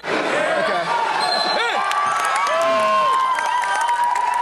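Spectators at a wrestling match cheering and shouting, with several sharp knocks from the action on the mat.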